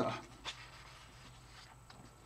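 Faint rustle of a sheet of paper being slid off the writing pad, against low room noise, after the last word of speech dies away at the start.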